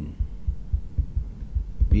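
Soft, irregular low thumps and rumble, several a second, with no speech.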